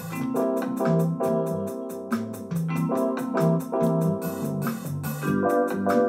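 Multitrack song playing from a Casio keyboard workstation: acoustic piano rhythm chords over a bass line that steps from note to note, with evenly spaced high percussion ticks.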